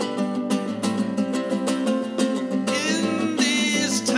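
Nylon-string acoustic guitar playing an instrumental passage of a folk song: a run of plucked notes over a steady bass. From about three seconds in, a held, wavering high melody note sounds over the guitar.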